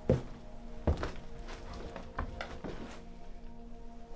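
Footsteps, about six heavy steps in the first three seconds, over a sustained, droning music score.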